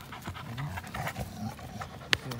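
An American pit bull terrier and a Belgian Malinois mix tugging a braided rope toy between them. They pant, with short, low vocal sounds coming at irregular intervals.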